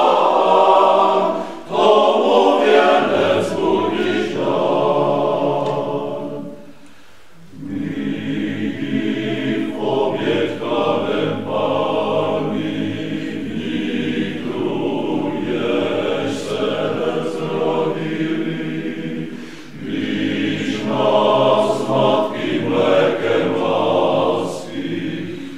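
Male choir singing a cappella in several-part harmony, with a short break in the singing about seven seconds in before the voices come back in.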